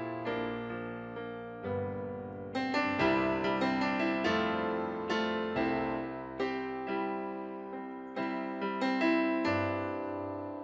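Stage keyboard playing a piano sound: a slow song introduction of gentle chords and notes, struck roughly once a second and each left to ring and fade.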